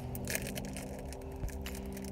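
Small snack bag of dried crickets being torn open by hand: irregular crinkling and crackling of the packaging.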